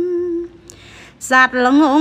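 A woman's unaccompanied voice chanting Khmer smot, a lullaby-style recited poem. She holds a long note with a wavering vibrato that ends about half a second in, draws a breath, and about a second and a half in resumes with ornamented notes that slide up and down.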